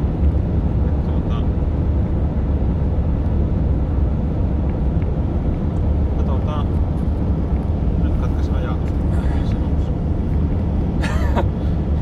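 Steady low drone of a van's engine and tyres, heard inside the cab while driving.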